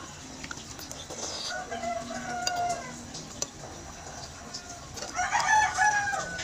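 A rooster crowing twice in the background: a shorter call about a second and a half in, then a louder, longer crow about five seconds in that ends on a long held note.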